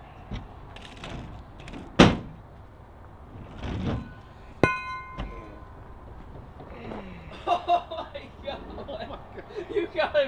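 A heavy 10-pound weight on a fishing line knocks against a pickup truck: one sharp, loud thump about two seconds in, then a metallic clink with a brief ring a little before five seconds, as the weight is lifted off the hard bed cover and swung over the side.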